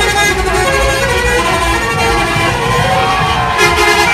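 Loud music mixed with the horns of tourist buses, over a low vehicle rumble; the tones shift and glide, and a brighter, harsher passage comes in near the end.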